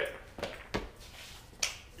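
Wooden kendama clacking: a few sharp clicks, the loudest near the end as the ball lands on the ken.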